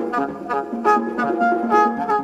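Free-jazz horn and percussion duo: a horn plays quick, short, clipped notes over scattered percussion hits.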